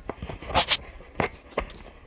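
A plastic PET bottle with some liquid in it being handled and hung on a metal support stake: a few sharp plastic clicks and knocks, two close together about half a second in and two more singly later, with light rustling between.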